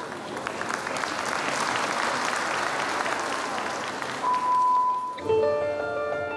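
Arena crowd applauding with scattered claps, fading after about four seconds; a single steady beep lasting about a second follows, then floor-exercise music on piano starts near the end.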